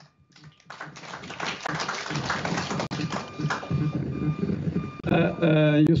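Audience applauding in a hall: a few seconds of dense clapping that starts about a second in and fades under a man's voice near the end.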